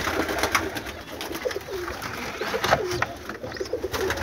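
Domestic pigeons cooing in a loft, in short low calls, with a few sharp clicks and knocks among them.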